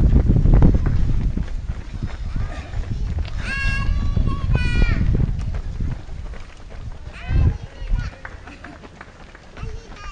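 Spectators at a road race shouting encouragement to passing runners: two long, high-pitched calls a few seconds in and a shorter one later. A heavy low rumble of wind on the microphone runs under the first couple of seconds.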